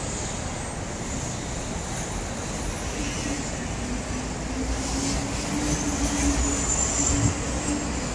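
Steady urban road traffic noise, with an engine hum coming in about three seconds in and the overall sound growing a little louder toward the end.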